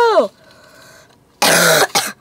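A single harsh cough, about half a second long, from someone who has had a cold for nearly three weeks.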